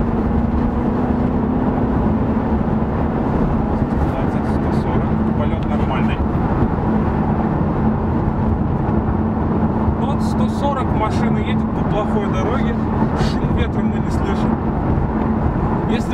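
Road and tyre noise inside the cabin of an Infiniti Q50 cruising at steady speed, with a steady low hum. Scattered light clicks join in from about ten seconds in.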